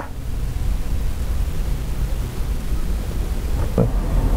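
Steady outdoor background noise: a low rumble with a hiss over it, with no clear single event.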